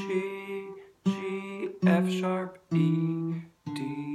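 Acoustic guitar playing single notes of a G major scale, one note about every second, stepping down in pitch.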